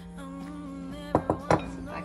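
Three quick knocks of ceramic kitchenware about a second in, as the flour bowl is emptied into the mixing bowl and set down, over background music with singing.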